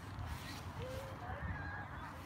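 Several faint, short distant calls, each a brief tone that bends slightly in pitch, over a steady low rumble.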